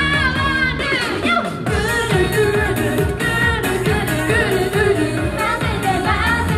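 Japanese idol pop song performed live: female voices singing into microphones over a pop backing track with a steady beat. The bass and beat drop out briefly about a second in, then come back.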